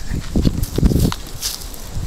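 Asian elephant walking right beside the vehicle, with irregular low thuds and some rustling.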